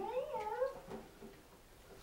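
A single drawn-out, wavering cry that rises and bends in pitch for about a second, then fades.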